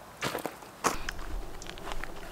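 Footsteps on a grassy dirt path, then a sharp knock about a second in as the camera is picked up, followed by the low rumble of the camera being handled.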